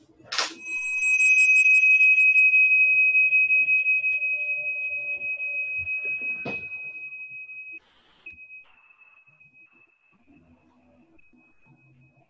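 A meditation bell struck once, giving a high, clear ring that slowly fades. It is the bell that opens the sitting. A sharp knock comes about six and a half seconds in, and the ring drops away abruptly soon after.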